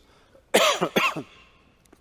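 A man coughing, a single short fit about half a second in, picked up close on a headset microphone.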